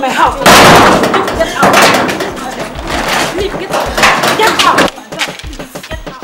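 Women shouting and crying out in a loud scuffle, with knocks and bangs against a metal gate.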